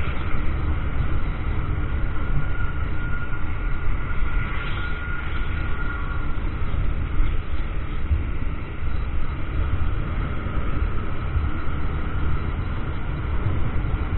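Riding noise from a Honda Grazia 125 scooter cruising at about 35–40 km/h: a steady low rumble of wind on the microphone and road noise, with the small engine underneath. The scooter slows near the end.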